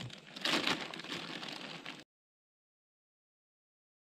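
Clear plastic bag crinkling and rustling as it is handled, for about two seconds, then the sound cuts off to dead silence.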